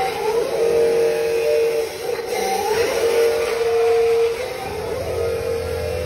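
Electric drive motors of a remote-control toy wheel loader whining in steady-pitched stretches of a second or so, with short pitch slides between them as it drives and works its bucket.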